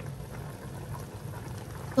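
Chicken pieces bubbling steadily in their own juices in a stainless steel pot, a low, soft simmering sound.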